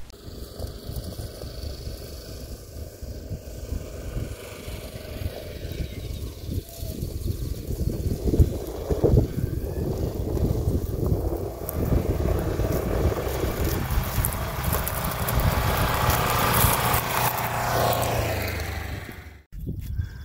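Polaris Ranger XP 1000 Northstar side-by-side driving across a grass field toward the camera, its engine running and growing louder as it comes closer. The sound cuts off suddenly near the end.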